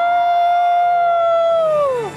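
A singer holds one long high note for about two seconds, sliding down as it ends, at the close of a show song with backing music.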